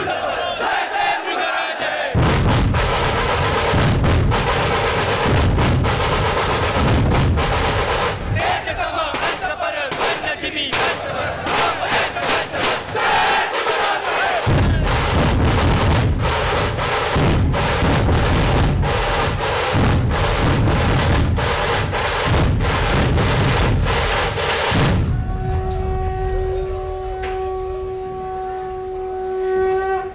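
Dhol-tasha drumming: large barrel-shaped dhol drums and tasha drums pounded together in a dense, loud rhythm, over a shouting crowd. The drums come in about two seconds in. Near the end the drumming gives way to one long steady held tone.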